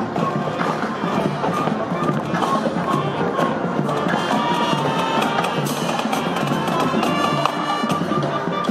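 Marching band playing as it marches past: flutes, clarinets and saxophones carrying the tune over steady marching drum strokes.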